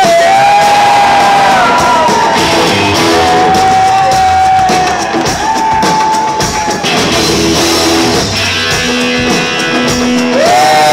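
Live rock band playing an instrumental break: an electric guitar lead with long, bent held notes over electric guitars and drums.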